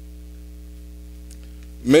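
Steady low electrical mains hum on the meeting room's microphone sound system, unchanging in level. A man starts speaking just before the end.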